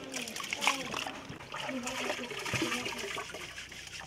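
Hands washing rice in a plastic basin of water: grains scooped up and stirred, with irregular splashing and water trickling back into the basin.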